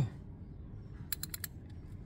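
Socket ratchet clicking four times in quick succession a little over a second in, as it works a sump bolt under the engine.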